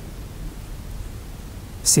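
A pause in a man's speech, filled by a steady low hiss of room tone, ending with the hissing start of his next word near the end.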